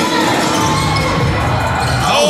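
A basketball bouncing on a hardwood gym court during play, over steady crowd chatter and background music in the hall.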